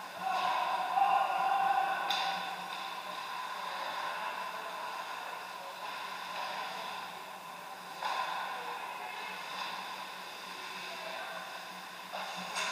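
Ice hockey play in an indoor rink: skates scraping the ice and sticks clacking, with a sharp crack about two seconds in, over a steady low hum.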